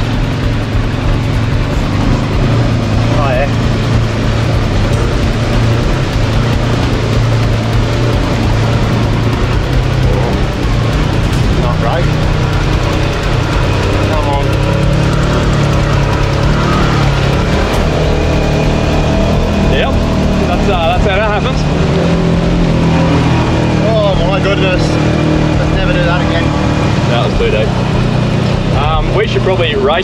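Can-Am quad's engine running under load, its pitch rising and falling with the throttle, as it is driven through a flooding tidal river crossing.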